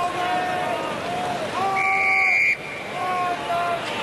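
Referee's whistle blown once in a steady blast of just under a second, about two seconds in, to award a penalty at a scrum. It sounds over crowd noise with held shouts.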